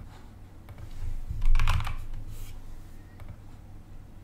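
Typing on a computer keyboard: a few scattered keystrokes, with a quick cluster of louder ones about a second and a half in.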